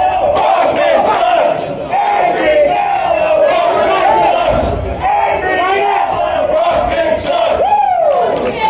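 Crowd of spectators shouting and yelling, many voices calling out over one another at a boxing match.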